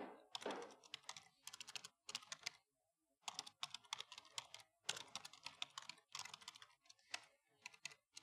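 Faint typing on a computer keyboard: quick runs of keystrokes, with a short pause about three seconds in.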